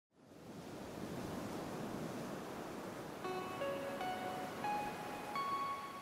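Channel intro jingle: a soft rushing, surf-like swell of noise, then about halfway through a run of five bell-like notes climbing in pitch, the last one held and ringing on.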